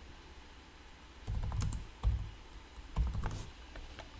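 A few scattered keystrokes on a computer keyboard, starting about a second in after a quiet stretch.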